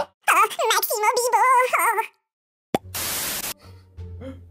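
A high voice calls out excitedly for about two seconds, its pitch wavering up and down. After a moment of dead silence comes a sharp click, then a short burst of hiss.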